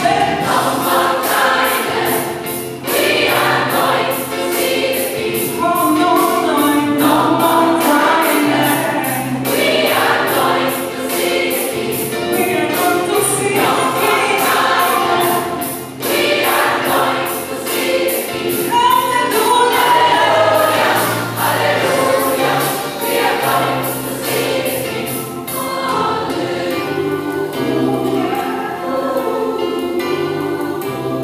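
Gospel choir singing in several-part harmony over an accompaniment with a steady, quick beat and a bass line.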